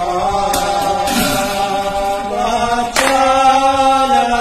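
Naam-prasanga devotional chanting in long, steady held notes, accompanied by brass hand cymbals (taal). The cymbals are struck about three times, loudest about three seconds in.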